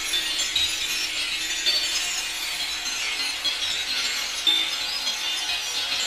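Harsh noise music: a dense, hissy wall of noise with a slow sweep rising and falling every few seconds, and a couple of sharper crackles.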